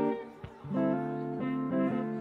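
Electric guitar strumming chords, with a short break about half a second in, then moving on to changing chords.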